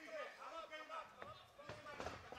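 Faint, distant voices calling out in the arena, with a couple of light knocks.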